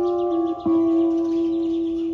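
Electric guitar playing a slow instrumental passage: a held note gives way to a new one picked just over half a second in, which rings on and slowly fades.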